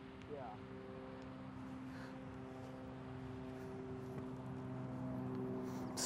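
Faint, steady hum of a running motor, slowly growing louder.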